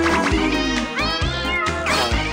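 Upbeat cartoon opening theme music with a steady beat; from about a second in, short sliding cries rise and fall over it several times.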